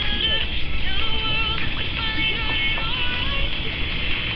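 Inside a moving commuter train: a steady low running rumble, with a series of high, even tones stepping from one pitch to another over it.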